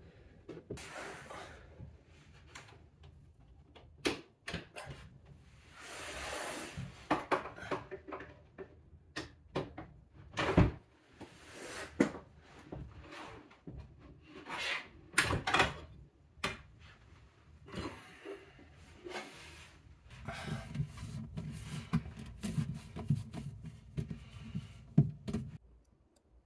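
A bathroom vanity drawer being worked off its soft-close metal slides: scattered clicks and knocks from the slides and the wooden drawer, with a short sliding rub about six seconds in and low handling rumble near the end.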